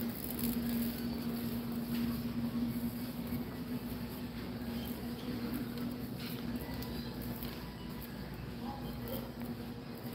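Background noise of a large warehouse store: a steady low hum that fades out about six seconds in, over a constant low rumble.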